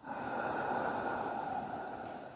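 A person breathing out slowly and audibly: a steady breathy rush that starts abruptly and slowly fades toward the end.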